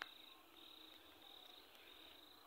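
Faint cricket chirping: short high trills repeating steadily, with a brief click at the start.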